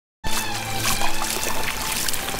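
Water running in a shallow stream and splashing as a hand dips into it, over background music with held notes; both begin abruptly just after the start.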